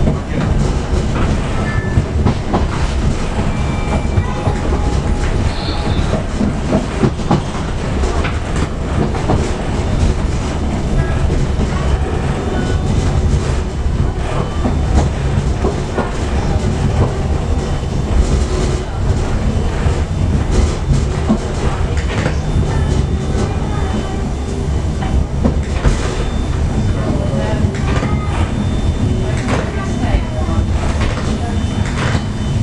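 Suburban HÉV train running on rails, heard from inside the carriage: a steady rumble with frequent short clacks of the wheels over rail joints.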